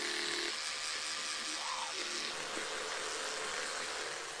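Electric toothbrush running while brushing teeth: a steady buzzing hiss. Its low hum drops away about half a second in, leaving the hiss.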